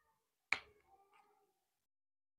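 A single sharp click about half a second in, followed by a faint ringing tail that dies away within a second.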